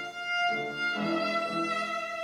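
Violin playing held notes over a Steinway grand piano accompaniment, with the notes changing about a second in.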